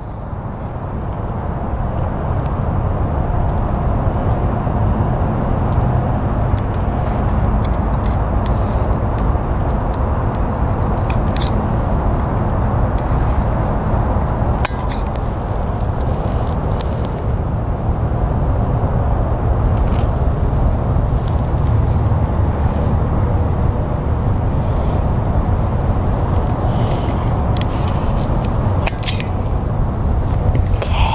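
A steady low outdoor rumble runs throughout, with a few faint sharp clicks of small pet nail clippers snipping a rabbit's nails.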